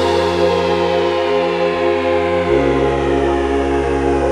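Deep house music at a breakdown: held synth chords with no beat, moving to a new chord about two and a half seconds in. A slow falling sweep runs across the top of the sound.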